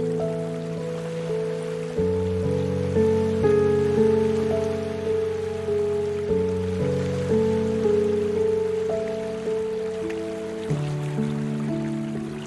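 Slow, calm relaxation music on piano: single notes struck about twice a second, each fading away, over held low notes, with the bass changing about two seconds in and again near the end.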